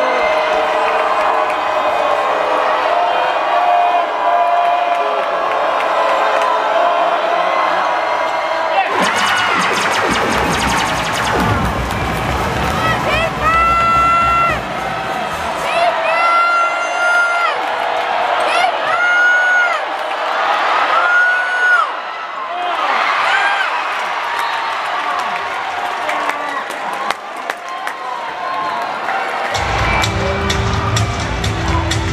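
Basketball arena crowd noise: a crowd cheering and shouting, with voices and music mixed in and a run of held high notes through the middle.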